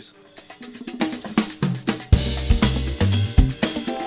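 Music interlude: a band track with a full drum kit (kick, snare, hi-hat and cymbals) over held instrument notes. It rises out of near quiet in the first second and plays loudly from about two seconds in.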